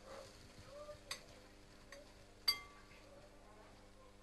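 Faint clinks of kitchenware as utensils, a glass bowl and a stainless steel pot are handled, with a sharper metallic clink about two and a half seconds in that rings briefly.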